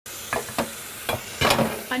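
Tap water running into a kitchen sink with a steady hiss, while dishes clink and clatter several times as they are washed by hand.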